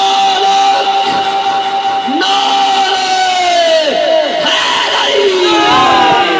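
Naat sung by a male voice: one long held note that bends downward after about four seconds into a run of falling, ornamented turns, with other voices layered beneath.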